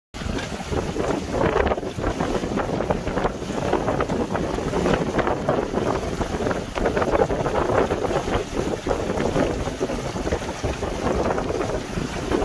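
Strong wind buffeting the microphone over the rushing and splashing of choppy water against the hull of a Hartley TS 18 sailboat under sail, in surges that rise and fall.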